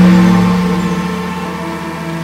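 A large hanging gong struck once, its low, steady hum ringing on and slowly fading.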